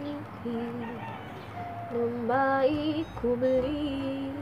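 A woman humming a slow tune in long held notes that step up and down in pitch.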